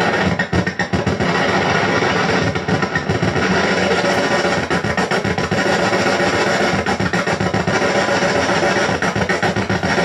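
A loud, dense wall of distorted electronic noise from a Death By Audio Robot lo-fi pitch-shifting pedal and a second effects box, with knobs being turned. The sound is steady overall, with a rapid flutter.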